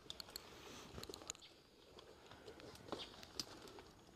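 Near silence, with a few faint, scattered clicks and taps of rope and harness gear.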